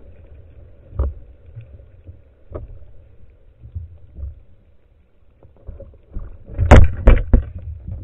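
Muffled underwater handling noise heard through a camera housing: a low rumble with a couple of single knocks. About seven seconds in comes a quick run of loud knocks and scrapes as the speared gilthead sea bream and the spear shaft bump the housing.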